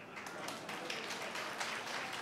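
Audience applauding at a steady level, a dense patter of many hands clapping.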